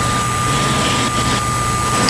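Steady hiss of a radio-broadcast recording, with a low hum and a thin, constant high whistle running underneath.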